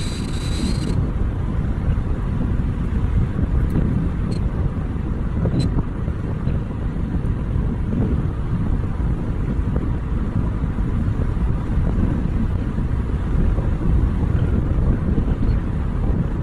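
Car driving along a paved road: steady low rumble of tyre and wind noise on a phone's microphone. A brief higher hiss stops about a second in, and a few faint ticks follow.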